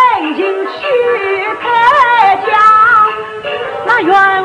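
Yue opera music from a 1954 recording: a single sliding melodic line with vibrato that bends up and down in pitch without a break.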